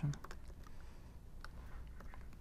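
Laptop keyboard being typed on: a few scattered, irregular key clicks.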